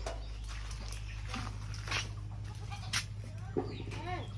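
A few faint, short animal calls among light clicks, over a steady low hum.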